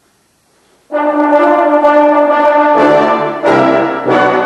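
Brass ensemble entering suddenly and loudly on a sustained chord about a second in, after a silence. Lower brass join near three seconds, with a short break in the sound just after.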